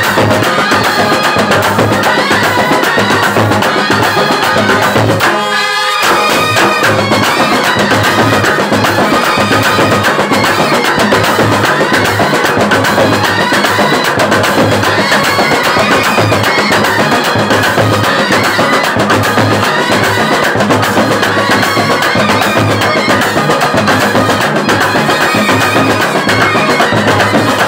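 Kerala band set, a brass and reed ensemble with drums, playing a Tamil film song loudly and without a break. About five seconds in, the bass drops out for under a second, then the full band returns.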